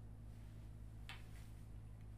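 Faint, near-silent room tone with a steady low hum, and one soft short brush about a second in as a tarot card is set down on the cloth-covered table.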